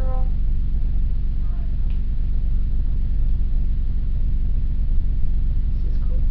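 A steady low hum of background noise runs unchanged throughout, with faint murmured words at the very start and again about a second and a half in.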